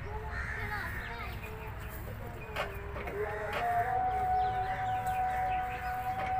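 Birds calling over a steady held tone that steps up slightly in pitch a little past halfway through, with a low rumble underneath.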